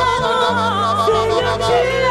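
Church worship music: a voice holding long notes with a wavering vibrato over sustained low keyboard notes that change chord a few times.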